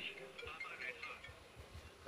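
Faint, distant voices in the background at low level, with no close sound.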